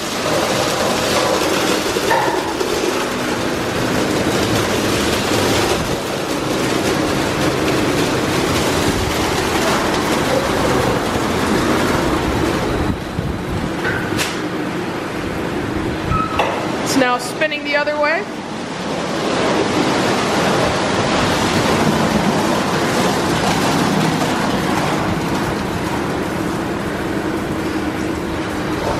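Friction car wash in full cycle: a spinning multicoloured side brush scrubbing the car's body while water sprays on the car, a steady loud wash of noise. A short wavering pitched sound breaks through about seventeen seconds in.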